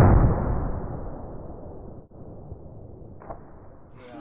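Compressed-air blast from a homemade PVC pressure cannon fired at about 70 PSI. A loud burst at the start trails off into a long, low, muffled rushing sound that fades over about two seconds, with a short knock a little after three seconds.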